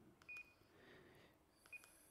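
Two faint, short, high key beeps from an ICOM ID-52 handheld radio, about a second and a half apart, as its buttons are pressed to open the menu.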